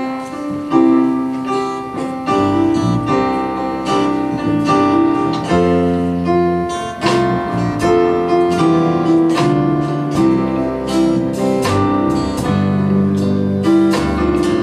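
Instrumental music with no singing: an electronic keyboard playing sustained chords in a piano voice, with an electric guitar alongside.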